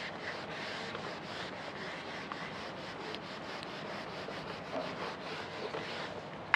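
A duster wiping marker writing off a whiteboard: a steady scratchy rubbing made of many quick back-and-forth strokes.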